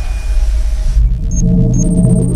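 Synthesized intro-logo sound effect: a loud, deep rumbling whoosh that gives way about a second in to steady low synth tones, with two short high pings.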